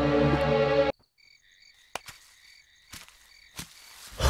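Film background music for about the first second, cut off abruptly, followed by a faint night-time ambience of steady high chirping with a few soft clicks.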